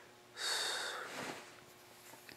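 A single loud breath through the nose, starting about half a second in and fading away within a second.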